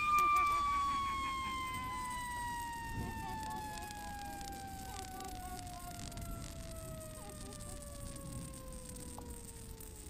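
A CO2 cartridge, punctured by a .22 LR round, spinning as the gas vents. It gives a high whistle that slides slowly lower and fades as the pressure runs down.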